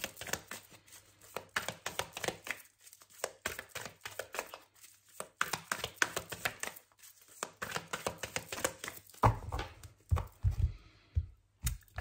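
A Santa Muerte tarot deck being shuffled by hand: a steady run of quick, irregular card flicks and clicks. About nine to eleven seconds in come a few dull low thuds.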